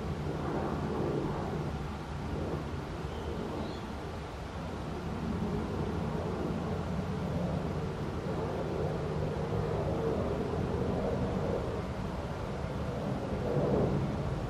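Steady low outdoor rumble that swells and eases slowly, with no distinct events standing out.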